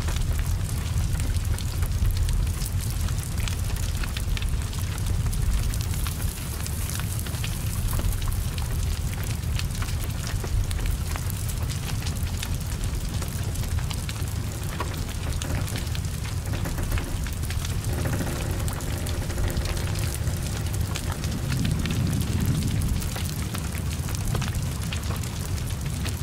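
Heavy rain falling on a burning car, with many small ticks over the steady low rumble of the fire. About eighteen seconds in, a faint humming tone joins for a few seconds.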